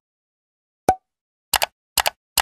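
End-screen button-animation sound effects: one short pop with a brief ping about a second in, then two quick double clicks like a computer mouse, about half a second apart.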